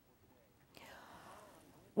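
Near silence, then from under a second in a faint breathy hiss: a woman drawing breath just before she speaks.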